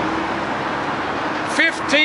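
Steady hiss of road traffic outdoors, with a man's voice starting again near the end.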